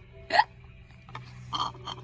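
A baby's short, high squeal of a laugh that rises in pitch, just under half a second in. Softer breathy sounds from the baby follow about a second later.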